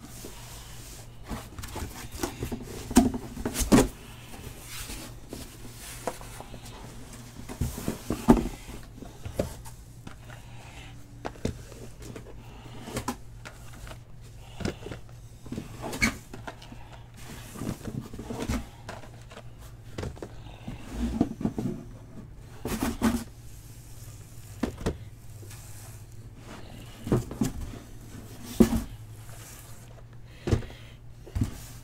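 Cardboard hobby boxes of trading cards being picked up and set down on a table one after another: irregular knocks and thumps with light rustling, over a steady low hum.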